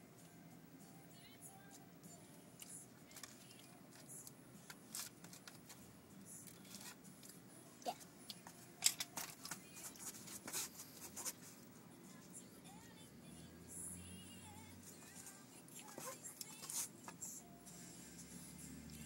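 Faint background music, with scattered light clicks and rustles from handling crackers, a plastic lunch tray and food wrappers, busiest in the middle.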